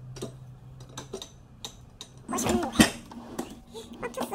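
Glass wine bottles knocking and clinking against each other and a metal wine rack as they are laid in: a few light taps, then a louder clatter a little past halfway.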